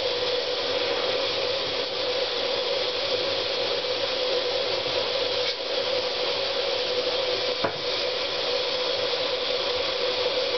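Steady hiss with a constant hum running underneath, and one short click near the end.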